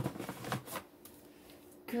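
A plastic jar set down with a sharp knock, followed by a few short rustles and clatters of groceries being handled in a box during the first second, then quiet.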